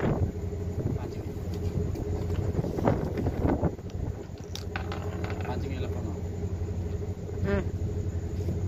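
A small engine running steadily in the background, a low even drone, with faint voices and a few light knocks over it.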